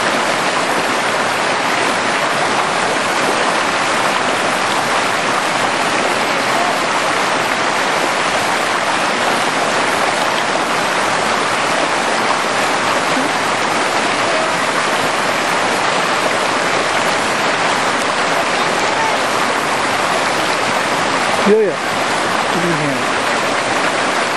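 Fast mountain stream rushing steadily over rocks and small cascades, a constant even wash of water noise.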